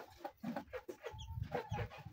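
Chickens clucking: a quick series of short, soft clucks with a few higher peeps among them.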